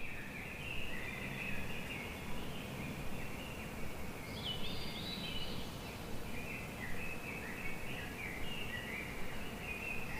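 Several birds chirping and twittering over each other, many short quick notes, over a steady low outdoor background rumble.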